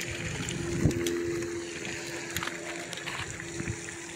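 A steady low hum with a few even tones, like a small motor running, over a faint background hiss, with a soft thump about a second in.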